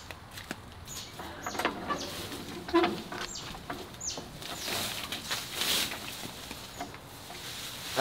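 Leafy weeds and vines being pulled up by hand and rustling, with a few short, high, falling bird chirps in the background.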